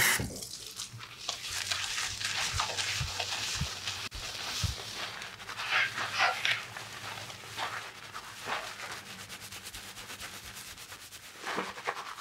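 Hands scrubbing shampoo lather into wet hair and scalp: a wet, crackling foam noise in quick repeated strokes.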